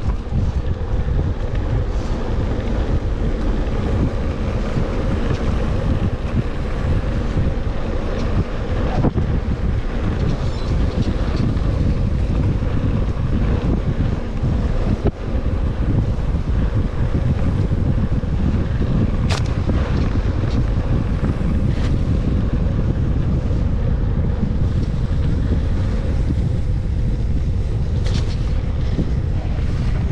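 Wind buffeting the microphone of a mountain bike rider's action camera while riding a dirt forest trail, over a steady rumble of knobby tyres on the ground. A few sharp knocks from the bike jolting over bumps.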